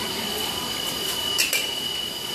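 A steady high-pitched whine over a noisy background, with one sharp knock about a second and a half in.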